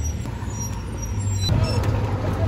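Low, steady engine rumble of a school bus. It gets louder about one and a half seconds in, where the sound switches to inside the bus cabin.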